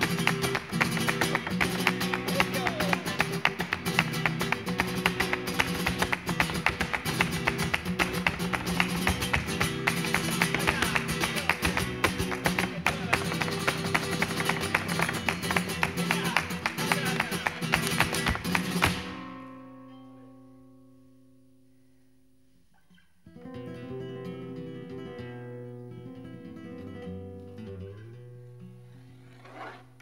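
Flamenco guitar accompanying rapid heel-and-toe footwork (zapateado) in a granaína, a dense run of fast strikes over the guitar. About two-thirds of the way through it stops abruptly, the last notes ringing away; a few seconds later the guitar carries on alone, quietly picking single notes.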